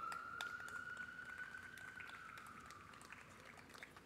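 Faint distant siren wailing: a single tone that rises slightly, then slowly falls and fades out about three seconds in.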